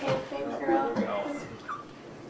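Quiet, indistinct voices in the room that fade away near the end, with a brief high squeak just before the end.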